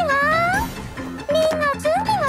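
Intro of a pop song: a high voice makes short, swooping wordless vocal sounds that dip and rise in pitch, over rhythmic instrumental backing.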